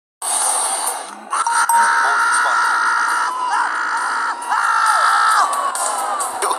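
Cricket fielders appealing loudly, three drawn-out shouts of about a second each, just after a couple of sharp knocks from the ball hitting bat or pad.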